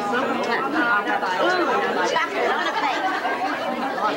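Several people talking at once in overlapping conversation, a steady group chatter.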